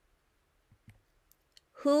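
A near-silent pause holding a few faint, scattered clicks, then speech begins near the end.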